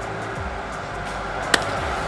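Background music over a steady hum of ballpark ambience, broken once about one and a half seconds in by a single sharp crack of a wooden bat hitting a baseball.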